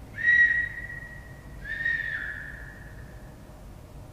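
Two long, steady, high whistle tones: the first loud and held about a second and a half, the second softer, dropping slightly in pitch partway through before fading.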